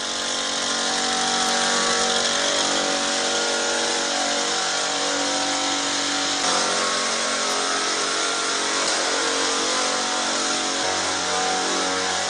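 Backpack power sprayer's small petrol engine running steadily at high speed, with the hiss of disinfectant mist being blown out. Its tone shifts slightly about halfway through.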